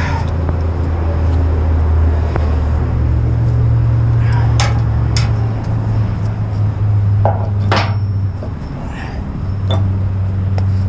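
Heavy truck's diesel engine running with a steady low hum that steps up in pitch about halfway through, while a few sharp metallic clanks and knocks come from fittings being handled and fitted on the steel trailer neck.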